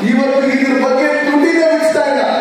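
A man's voice through a handheld microphone, drawn out in long held notes that shift in pitch, more like chanting than ordinary speech.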